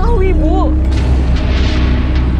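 Tense drama soundtrack: a heavy, steady low rumbling drone under a woman's voice, with a hissing whoosh swelling up in the second half as a dramatic sting.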